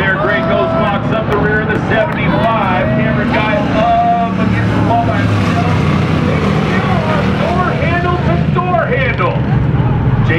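A pack of race cars running together in a steady, continuous engine drone, with a voice talking over it.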